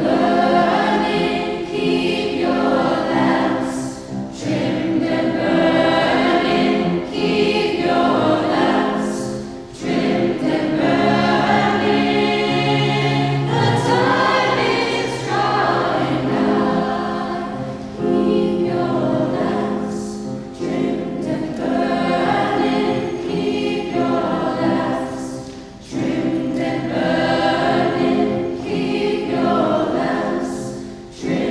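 A choir singing a piece, sustained phrases with short breaks between them every several seconds.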